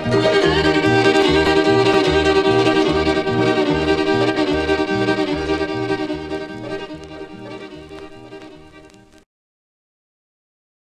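Bluegrass band playing an instrumental ending led by fiddle over a steady bass beat of about three a second. It fades out, then cuts off about nine seconds in.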